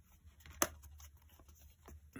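Quiet handling of a folded cardstock card: faint paper rustling, with one sharp tap about half a second in and a fainter one near the end.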